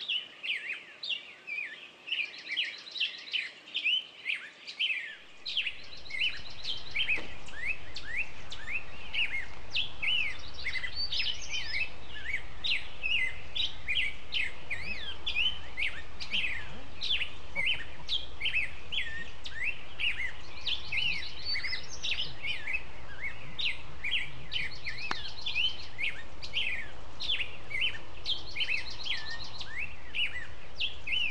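Songbirds singing in an early-morning chorus: many overlapping short chirps and trills with hardly a pause. About six seconds in, a steady low rumble comes in underneath and stays.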